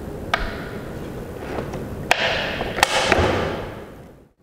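The magnesium-alloy blade guard of a handheld concrete saw being unlocked and swung by hand to a new angle: three sharp metallic clicks, with a short scraping slide between the second and third.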